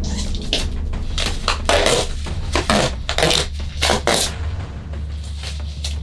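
Duct tape being pulled off the roll in a series of short ripping pulls, about half a dozen over a few seconds, until the roll runs out.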